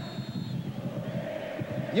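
Steady stadium crowd din on a television football broadcast, with a commentator's voice coming in at the very end.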